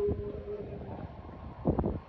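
Wind buffeting the microphone in a low, uneven rumble, with a short burst of knocks near the end.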